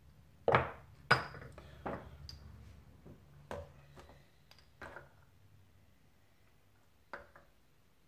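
Metal clinks and knocks from Honda CBX piston and con rod parts being handled and set down on a digital scale: about six sharp strikes, the loudest two about half a second and a second in, some with a brief ring.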